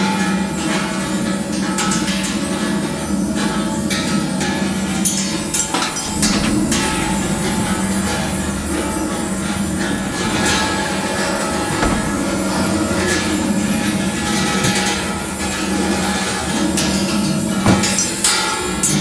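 Background music, an instrumental track with a steady low note and scattered percussive hits.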